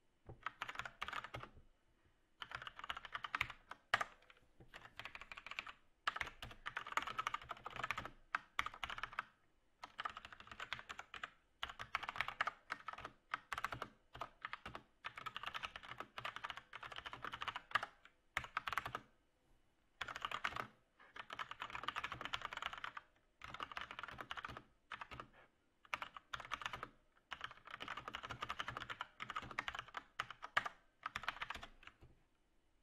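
Typing on a computer keyboard: quick runs of keystrokes a second or two long, broken by short pauses.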